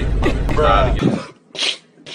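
A voice over the low hum of the car's idling engine cuts off suddenly about a second in. Then a man cries, with two sharp sniffs.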